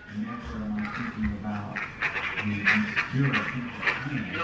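Muffled, hard-to-make-out voice coming through a mobile phone's speaker on a call, with yelling in the background on the line.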